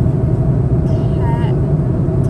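Steady low drone of a passenger jet's cabin in flight. A short voice cuts in about a second in.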